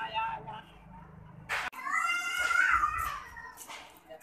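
A cat meows once, a long drawn-out call that rises and then falls in pitch, about two seconds in, with a sharp click just before it.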